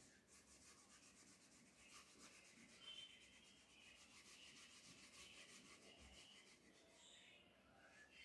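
Faint back-and-forth rubbing of a wooden-backed board duster wiping marker writing off a whiteboard.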